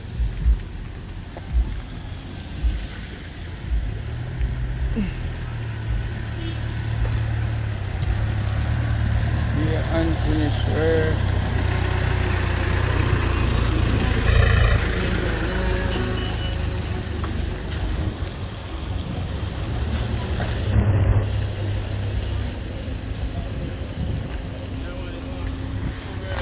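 Cars driving slowly past on a wet road: a low rumble of engines and tyres that swells to its loudest about halfway through and then eases off. Voices are heard briefly about ten seconds in.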